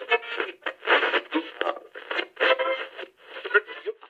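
A thin, tinny voice-like sound, as if heard through an old radio or telephone, in short syllable-like chunks with no low end.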